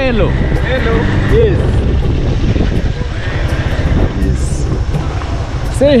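A motorcycle engine running with a steady low rumble, with voices over it near the start and again near the end.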